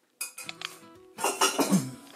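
A metal saucepan and utensil clattering on a kitchen counter: a sharp clink about a quarter second in, then a louder run of knocking and scraping in the second half.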